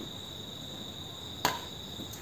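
Crickets chirring in one steady high tone, with a single sharp smack of a badminton racket striking the shuttlecock about one and a half seconds in.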